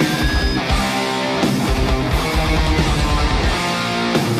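Live heavy metal band playing a slow, doomy epic metal song: electric guitars over bass and drums.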